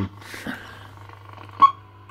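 Low steady hum and faint hiss from a CB transceiver setup, with one short, sharp click about one and a half seconds in, as the microphone's push-to-talk is keyed to transmit.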